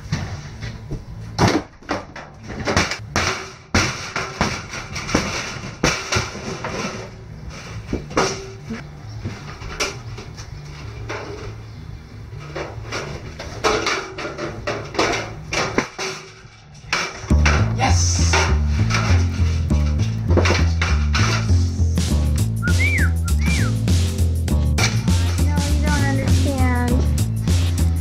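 Irregular knocks and clatter of wooden boards and debris being handled during a tear-out. About two-thirds of the way through, music with a heavy bass beat comes in and takes over, with a voice-like melody joining near the end.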